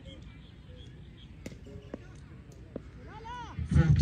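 Quiet open-air ambience at a cricket ground, with a few faint scattered clicks and chirps. A brief call is heard about three seconds in, then loud male speech starts just before the end.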